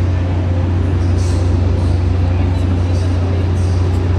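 A loud, steady low hum with indistinct voices in the background.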